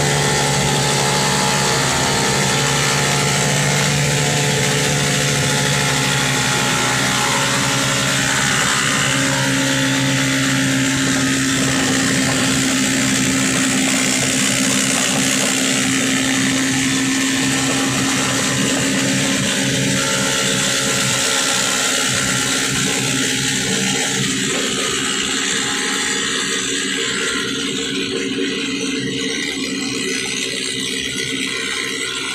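Motorcycle-tricycle engine running steadily under a broad hiss, its note shifting up partway through and the whole sound easing off slightly near the end.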